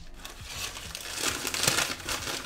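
Brown packing paper crinkling and rustling as it is grabbed and pulled out of a cardboard box, getting louder toward the end.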